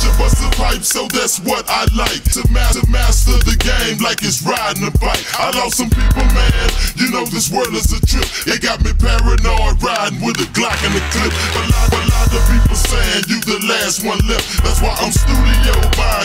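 Chopped and screwed hip hop: slowed, pitched-down rap vocals over a deep bass line that drops in and out.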